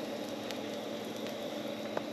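Steady low hum and hiss of background noise, with a couple of faint clicks.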